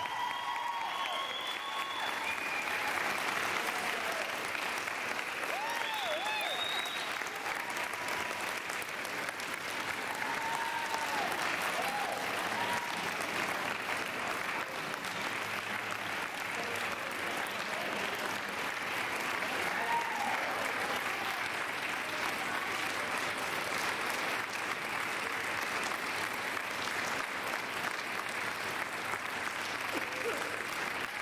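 Audience applauding steadily, with scattered shouts and whoops from the crowd in the first part.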